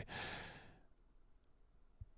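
A man's short breath out, a sigh, into a close microphone, fading away within about the first second.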